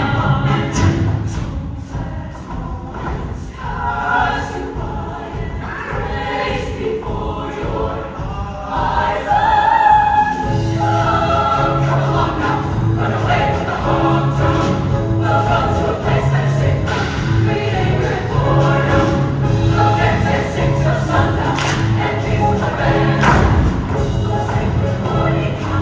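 A large mixed show choir singing over instrumental accompaniment with drum hits. The low bass line drops out for the first several seconds and comes back in about ten seconds in, after which the music is steadily louder.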